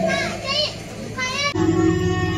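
Crowd voices with children calling out, then, about one and a half seconds in, an abrupt switch to recorded dance music with a steady beat.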